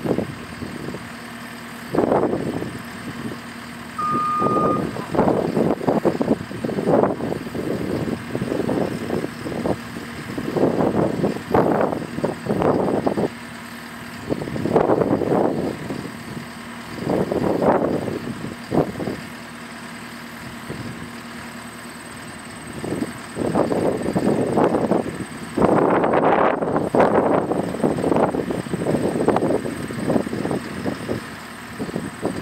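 JCB skid steer idling with a steady low hum, under irregular swells of rushing noise every few seconds. One short electronic beep sounds about four seconds in.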